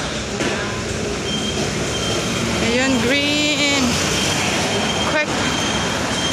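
Busy city street traffic noise with pedestrians passing. A thin, steady high tone begins about a second in, a passerby's voice is heard briefly in the middle, and there is a sharp click near the end.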